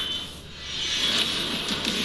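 Movie trailer soundtrack: music with action sound effects that dip briefly about half a second in, then swell back up.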